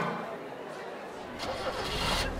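The last chord of the song fading out, then a low engine rumble of a vintage car starting up, swelling about a second and a half in, with a murmur of voices.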